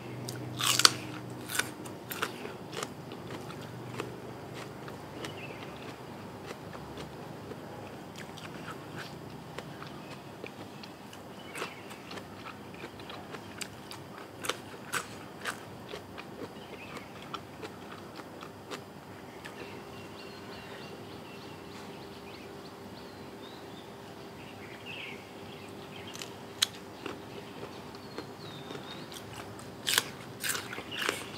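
Close-up crunching bites into raw bitter gourd, the loudest and most frequent crunches in the first few seconds. Scattered chewing crunches and mouth clicks follow throughout.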